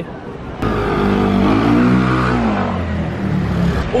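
A motor vehicle's engine passing close by. It starts suddenly about half a second in, its pitch rises and then falls, and it fades out near the end.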